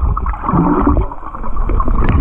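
Muffled underwater sound of seawater moving and gurgling around a submerged action camera, with a loud low rumble and no high sounds.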